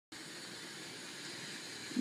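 Steady, even background hiss of room ambience, with no distinct events.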